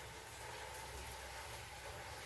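Faint steady background hiss with a low hum: room tone of the recording, with no distinct sound event.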